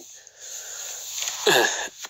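A man's audible in-breath between phrases of speech, a soft rushing inhale lasting about a second, before his voice comes back in near the end.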